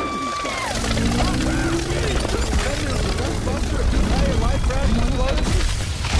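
A dense jumble of several movie-trailer soundtracks playing over each other. Many voices talk at once over a steady low rumble, with snatches of music and sound effects.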